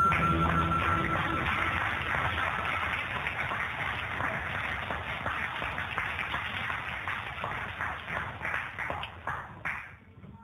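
A held final harmonica note over acoustic guitar fades out in the first couple of seconds as an audience applauds. The applause thins to scattered claps and stops near the end.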